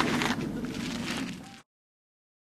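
A brief rustle of handheld camera handling noise, then faint background noise, and then the sound cuts off to dead silence about one and a half seconds in.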